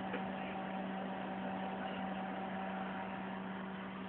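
Steady electrical hum and fan noise from a running vacuum-tube RF power supply and its cooling fans: one constant low tone with fainter higher tones over an even rushing noise.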